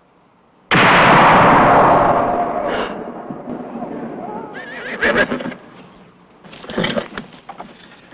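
A firing squad's rifle volley goes off suddenly about a second in and echoes away over a couple of seconds, followed by a horse whinnying and a few sharp noises near the end.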